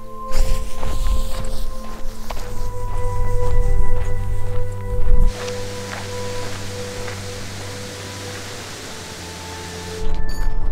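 Background music of long, sustained tones. During the first five seconds a loud, rumbling, clicking noise sits under it and then stops abruptly, leaving the music over a steady hiss.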